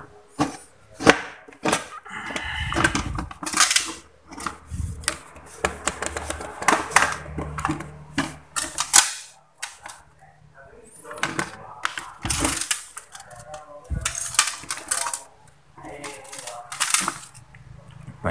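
Hard plastic clicks and knocks from a rice cooker's housing and parts being handled as it is closed up and switched on: a long irregular run of sharp taps, some of them loud.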